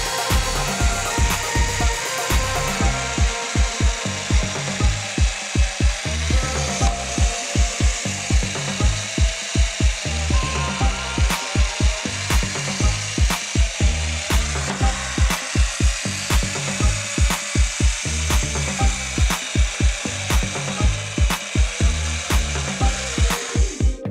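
Electric drill converted from 220 V mains to 12 V DC, its motor running and the bit drilling into a wooden disc, with a wavering pitch; it stops at the very end. Background music with a steady beat plays throughout.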